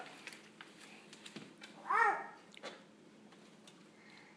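A toddler's short babbled vocal sound, a single rising-and-falling syllable about two seconds in, with a few faint taps between.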